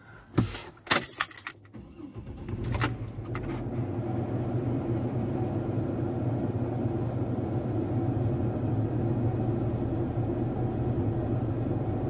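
Keys jangling and clicking in the ignition, then a car engine starts about two seconds in and settles into a steady idle.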